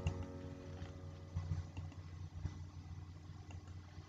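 Low steady hum with a few faint, scattered computer-mouse clicks, and a faint tail of music fading near the start.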